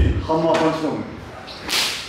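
A man's short drawn-out vocal sound during a karate partner drill, then a brief sharp swish near the end of the movement.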